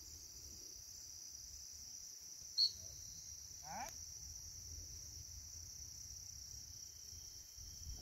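Steady chorus of field crickets, with low wind rumble on the microphone. A single short, high chirp about two and a half seconds in is the loudest sound, and a brief rising call follows a little over a second later.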